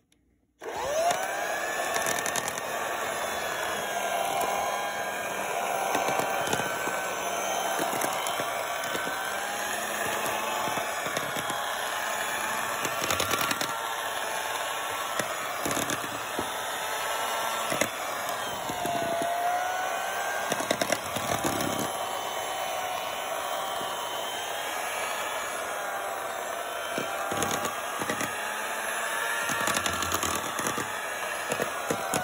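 Electric hand mixer switched on about half a second in and running steadily, its motor whine wavering in pitch as the beaters churn cake batter in a bowl.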